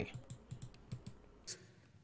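Faint, scattered small clicks, five or six of them, then dead silence from about a second and a half in.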